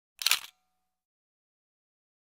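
A short, sharp click-like transition sound effect, about a third of a second long, a little way in, with a brief ringing tone trailing after it.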